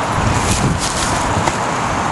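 Steady rushing noise of wind on the microphone, with a few faint ticks.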